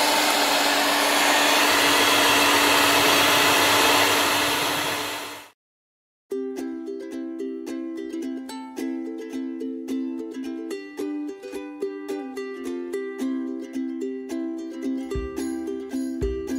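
Contempo electric hand mixer running steadily at one pitch, its beaters whisking icing sugar and egg white into icing, cut off abruptly about five seconds in. After a brief silence, background music with quick plucked notes plays to the end.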